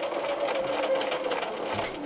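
Electric sewing machine stitching a seam through two layers of fabric, running steadily with a motor hum and rapid needle clicks.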